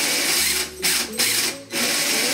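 WL Toys A959 RC buggy's electric motor spinning the drivetrain with its new metal gears and drive shaft, run at speed in bursts with three brief cut-outs of the throttle. This is a bench test to check that the freshly rebuilt drivetrain works.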